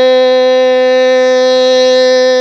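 A loud instrumental drone holding one note perfectly steady, rich in overtones: the sustained accompaniment to Hmong kwv txhiaj sung poetry, heard between sung lines.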